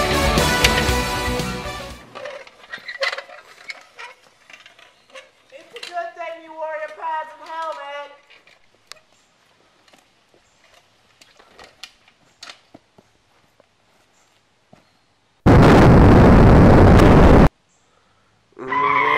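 Pop music that cuts off about two seconds in, then scattered faint clicks and a short wavering voice. Near the end comes a very loud two-second burst of even, rushing noise that stops abruptly.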